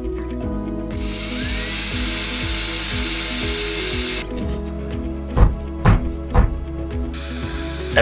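Cordless drill/driver running for about three seconds as it drives a screw into a particleboard cabinet panel, then stopping abruptly, over background music.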